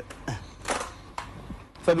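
A handful of short, sharp clicks spread through a pause in speech, with a voice starting again near the end.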